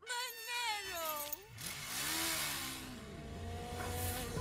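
Film soundtrack from a comedy clip: a pitched sound slides down in pitch over about a second and a half, then a rushing swell, with steady held tones coming in near the end as music begins.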